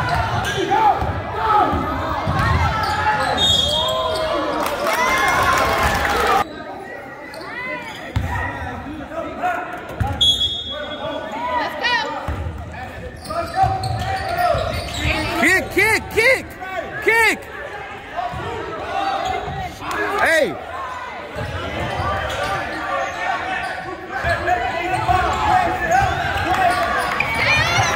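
A basketball dribbled on a hardwood gym floor, bouncing again and again, with sneakers squeaking in quick chirps about 15 to 17 seconds in. Spectators' voices mix in, and everything echoes in the large gym.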